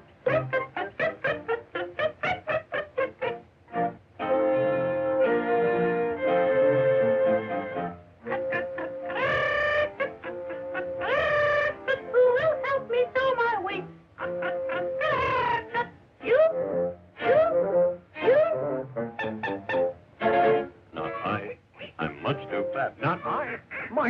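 Orchestral cartoon score with brass: quick short notes at first, then held notes, with sliding, bending notes around the middle.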